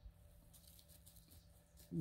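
Near silence: faint background hiss with a low steady hum, and a man's voice starting again at the very end.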